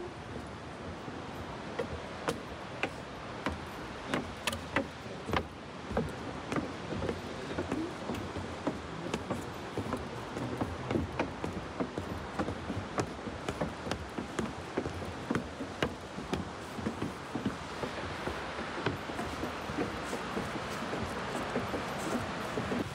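Footsteps on a wooden boardwalk and stairs: irregular knocks and taps of shoes on planks. A steady rushing noise grows louder over the last few seconds.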